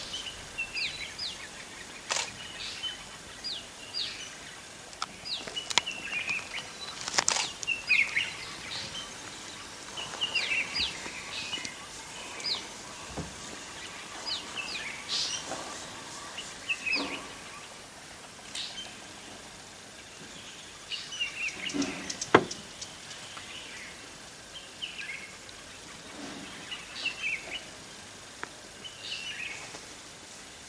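Birds chirping: many short, high chirps that slide down in pitch, coming in clusters, with a few sharp clicks, the loudest a little past the middle.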